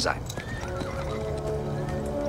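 A horse whinnies, probably with hoof clops, over background film music with long held notes.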